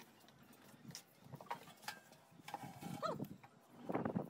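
A stainless steel washing machine drum being handled and fitted into its plastic outer tub: scattered light knocks and scrapes of metal against plastic. A short wavering squeak comes about three seconds in, and a louder knock follows near the end.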